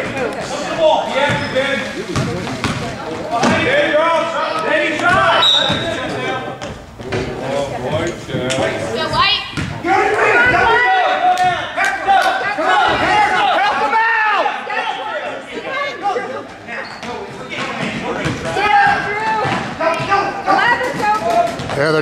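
Basketball bouncing on a gym floor during play, with overlapping crowd voices and shouting in an echoing gymnasium.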